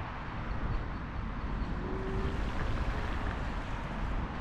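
Steady city traffic noise around a large square, with low wind rumble on the microphone of a slowly moving scooter. A brief faint tone sounds about two seconds in.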